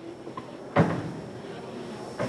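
A single sharp knock about three-quarters of a second in, against quiet room tone.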